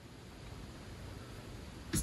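Faint, steady hiss of room noise in a pause between spoken sentences, with a short breath just before speech resumes at the end.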